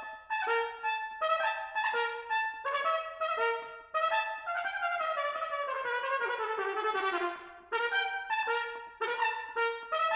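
Solo trumpet playing a passage of wide leaps, major sevenths and perfect fourths, in short separated notes. About halfway through, a long descending line falls for roughly three seconds to a low note, then the leaping notes return.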